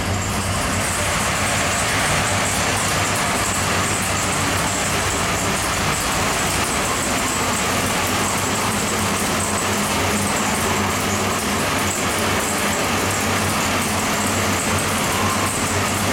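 A 632 cubic-inch big-block Chevrolet V8 marine engine running steadily on an engine dyno, its exhaust note even and unchanging with no revving.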